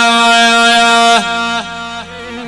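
Electronic arranger keyboard holding one long, reedy, string-like melody note. About a second in, it slides down twice in quick succession and gets quieter.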